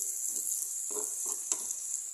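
Pork, ginger and garlic sizzling in hot oil in an electric skillet, with a steady hiss while a metal spatula stirs and scrapes the pan. A sharp click sounds about one and a half seconds in.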